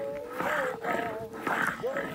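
Round hand stone (huyo) pushed back and forth over a flat grinding stone (guyo), stone scraping on stone over a little flour as grain is ground, in about three strokes roughly half a second apart. A steady droning tone runs underneath.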